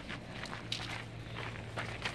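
Footsteps on a packed dirt and gravel yard, several steps about half a second apart, over a steady low hum.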